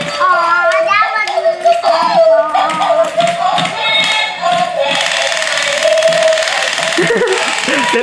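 Battery-operated Dalmatian puppy toy with a spinning light-up disco ball playing its electronic song, a high, wavering melody that runs on without a break.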